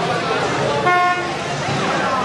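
A car horn gives one short beep about a second in, over crowd chatter and passing traffic on a busy street.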